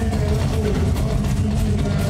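Live band playing loud party dance music, a drum kit keeping a steady beat under held melodic lines.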